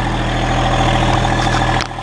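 Massey Ferguson GC1725M sub-compact tractor's diesel engine running steadily, heard from the operator's seat, with one sharp metallic click near the end.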